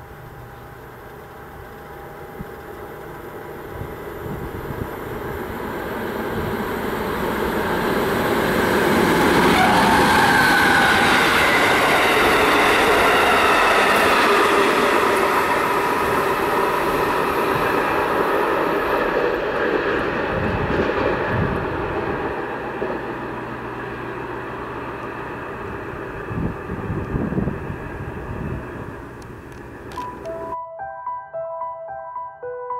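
A MaK G 1206 diesel-hydraulic locomotive hauling a yellow track tamping machine passes through the station. The engine and the wheels on the rails swell to a peak about ten seconds in, then fade as the train goes away, with a few low knocks near the end.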